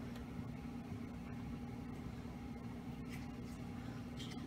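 Quiet indoor room tone: a steady low hum, with a faint short noise about three seconds in.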